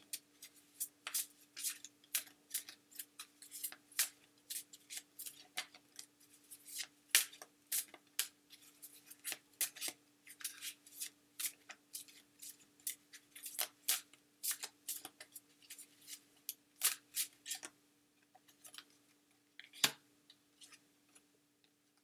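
A deck of oracle cards being shuffled by hand: quick, irregular snapping clicks, several a second, thinning out over the last few seconds.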